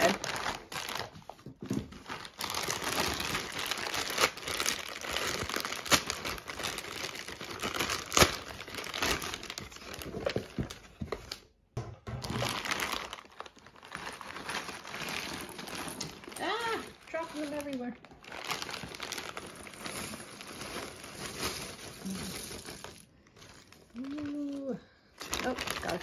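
Clear plastic bag full of cardboard jigsaw puzzle pieces crinkling as it is handled and opened, with the pieces emptied out onto the table.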